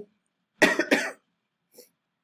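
A person coughing, two quick coughs about half a second in.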